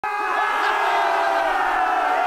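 Many voices yelling together in a steady, crowd-like din that starts abruptly.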